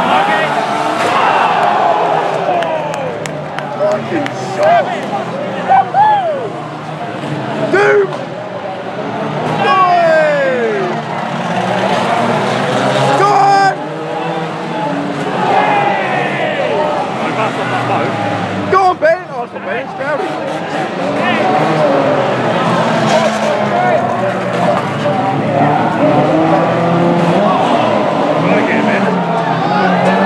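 Several banger-racing cars' engines revving over one another, their pitch rising and falling, with tyre scrub and a handful of sharp crunching impacts as the cars ram each other.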